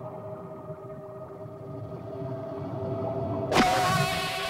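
Sound-designed underwater score: a held low musical drone with a slowly swelling rumble, broken about three and a half seconds in by a sudden loud whoosh with a falling sweep as the animated predator's claws strike into the seabed mud.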